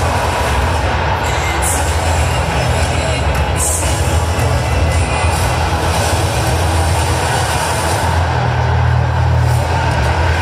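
Stadium PA playing a pre-match hype video soundtrack: loud music with heavy, steady bass and a dense wash of sound above it. Brief high swishes come about two and three and a half seconds in.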